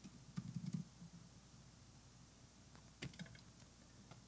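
Faint typing on a laptop keyboard in two short bursts, one just after the start and another about three seconds in.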